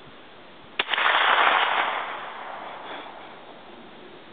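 A single 9 mm gunshot: a sharp crack about a second in, followed by a loud rushing noise that fades away over about two seconds.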